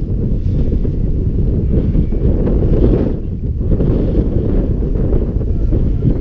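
Wind buffeting the microphone: a loud, steady low rumble throughout.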